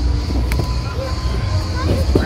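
Children's voices and play noise around outdoor trampolines: scattered short calls over a steady low rumble, with one sharp click about a quarter of the way in.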